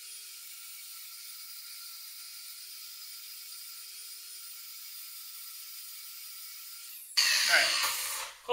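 Angle grinder running with a steady high whine while grinding mill scale off the end of a steel tube down to bare steel; it stops abruptly about seven seconds in.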